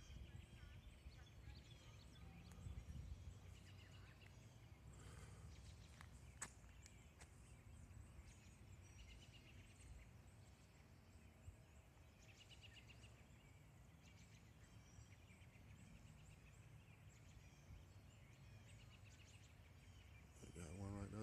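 Near silence: faint outdoor ambience with a low rumble, a few faint high chirps, and one sharp click about a third of the way in.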